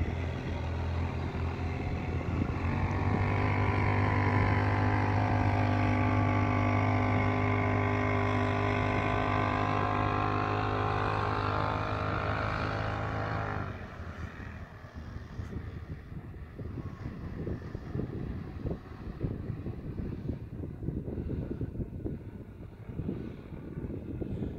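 A motor vehicle engine running at a steady pitch, cutting off abruptly about 14 seconds in. After that there is only wind buffeting the microphone.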